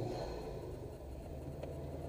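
Subaru WRX's turbocharged flat-four engine pulling, heard from inside the cabin as a steady low drone with tyre and road noise, easing slightly about a second in.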